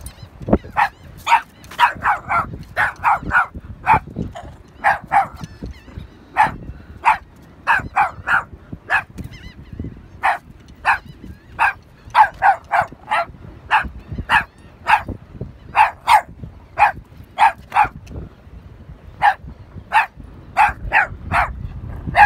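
Boston Terrier barking over and over, short high barks coming singly or in quick runs of two to four.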